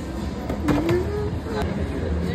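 Background chatter of people talking in a busy shop, with a few sharp clicks or clatters about halfway through.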